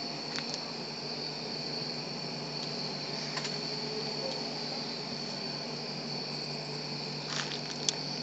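Steady chorus of night insects such as crickets: a continuous high-pitched trill that holds even throughout, with a few faint clicks.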